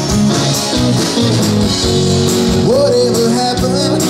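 Live band playing: electric and acoustic guitars over bass and drums with a steady beat, heard from the audience.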